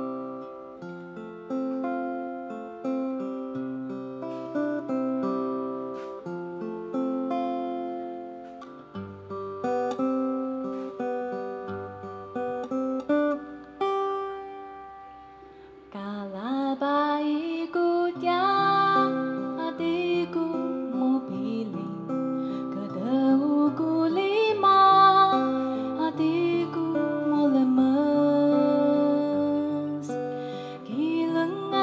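Acoustic guitar playing a song's introduction alone, then about sixteen seconds in a woman begins singing into a microphone over the guitar accompaniment.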